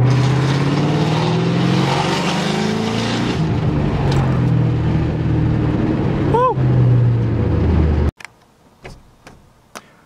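The 4.6-litre V8 of a 1996 Ford Mustang GT, heard from inside the cabin while driving. The engine note climbs in pitch, drops back about three seconds in, then climbs again. About eight seconds in, the engine sound cuts off abruptly, leaving a much quieter cabin with a few faint clicks.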